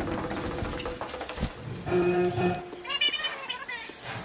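Horror-film soundtrack audio: the tail of a loud hit fading away, a short held low tone about halfway through, then a brief high, wavering cry near the end.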